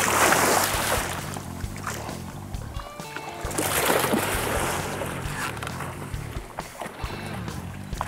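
Two big splashes of a tarpon thrashing at the surface beside the boat, one right at the start and a second about four seconds in, over background music.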